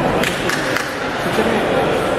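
Indistinct voices of people talking around a kickboxing ring, with a few light clicks in the first second.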